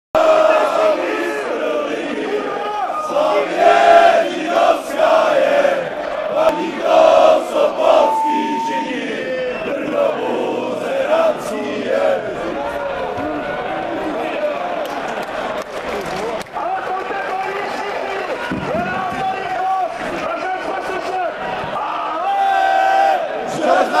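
A large crowd of football supporters chanting together in a stadium. The chanting is loud and rhythmic for the first eight seconds or so, then settles into a steadier roar of many voices.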